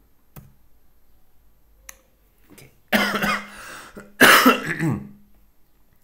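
A man coughing twice, loud, the second cough about a second after the first, with a couple of keyboard clicks before them.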